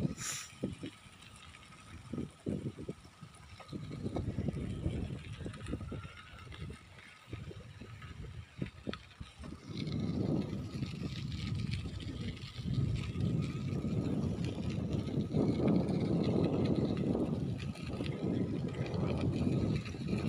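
Bicycle ride with a gusty low rumble of wind buffeting the microphone and tyres rolling on the path, growing louder about halfway through. A single brief click comes right at the start.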